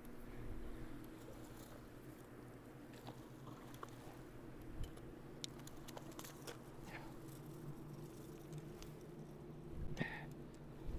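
A hooked smallmouth bass splashing at the surface beside the rocks as it is reeled in: a few scattered light splashes and clicks over a faint steady low hum.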